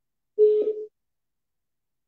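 A single short electronic telephone tone, about half a second long, as a call is being placed.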